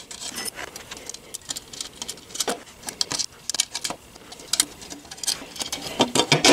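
Stainless steel flat washers and lock nuts being fitted by hand onto a skid plate's mounting studs, making irregular light clicks and ticks as the metal pieces touch.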